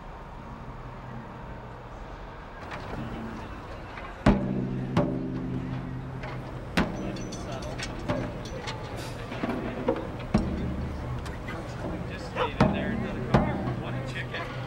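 Band warming up before a song: scattered single drum hits with held low notes from a drum or bass ringing after some of them, over a low steady hum. The first hit comes about four seconds in and is the loudest.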